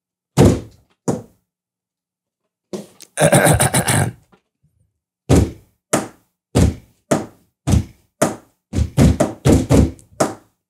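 A hand thumping on a tabletop to keep time as a makeshift beat for an a cappella freestyle. There are two thumps, a pause, then from about five seconds in a steady rhythm of about two thumps a second, which gets busier near the end.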